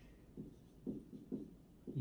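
Felt-tip marker writing on a whiteboard: several short, faint strokes with brief gaps between them.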